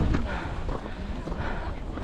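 Footsteps crunching on packed snow, an irregular run of steps, with a crowd of hikers talking in the background.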